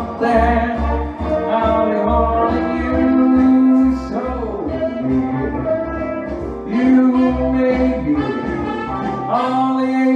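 A man singing a song into a handheld microphone over a backing track, with held vocal notes over a steady bass line.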